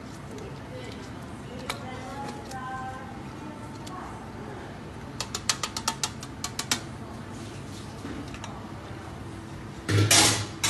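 A ladle working sauce through a stainless-steel conical sieve, with a quick run of light metal taps about halfway through, about a dozen in under two seconds.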